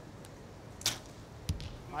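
A compound bow being shot: a sharp crack as the string is released a little under a second in, then about half a second later a short, dull thump as the arrow strikes the target.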